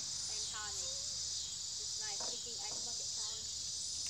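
Steady, high-pitched chorus of insects, crickets by the sound of it, running without a break.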